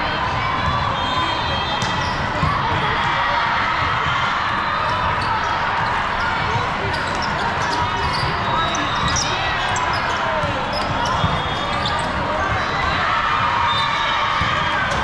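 Sound of an indoor volleyball match: many voices talking and calling at once, steady throughout, with ball hits and bounces cutting through now and then.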